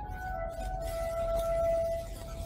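Music played back from a 1964 Melodiya 78 rpm record: long held notes, a new note taking over about half a second in, over a low rumble from the record.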